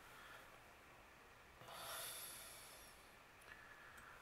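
Near silence, broken about halfway through by one soft breath out, a short hiss through the nose close to the microphone.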